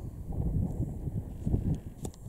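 Wind buffeting the camera microphone: an uneven low rumble that rises and falls in gusts.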